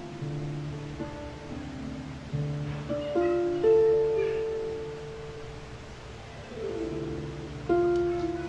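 Harp played slowly and softly: single plucked notes and low bass notes left to ring into one another. The playing swells to its loudest a little past three and a half seconds in, thins out, then picks up again near the end.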